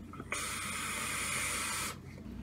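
Steady airy hiss of a large vape hit taken on a Wotofo Lush RDA (rebuildable dripping atomizer) on a box mod. It lasts about a second and a half and cuts off suddenly.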